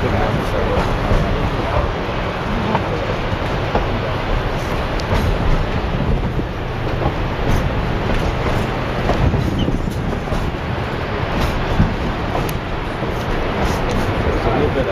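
Narrow-gauge passenger train running along the track, heard from on board: a steady rumble of the coaches and wheels on the rails, with a few faint clicks.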